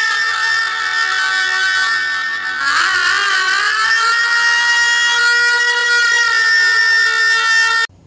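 Film background score: one long held note with several overtones, wavering briefly about three seconds in and then held again, cutting off just before the end.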